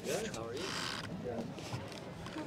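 Faint voices of people talking in the background, with a short rustling noise lasting about half a second, starting about half a second in.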